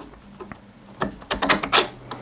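A mini drill chuck's skimmed metal handle scraping and clicking as it is pushed into the snug-fitting bore of a metal toolpost drill block. A few short, sharp rubs come in the second half.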